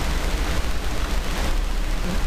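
Steady hiss with a low hum underneath, the constant background noise of the recording that also runs under the narration.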